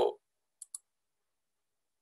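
Two quick computer mouse clicks in close succession, like a double-click, a little over half a second in.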